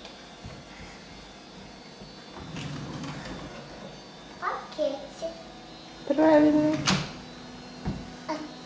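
A toddler babbling in short bursts, loudest about six seconds in, while wooden kitchen drawers slide and rattle as they are pulled open and pushed shut. There is a sharp knock near the end.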